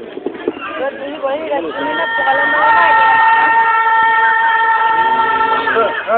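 People's voices and calls, with one steady high note held for about four seconds starting around two seconds in and ending just before the voices pick up again.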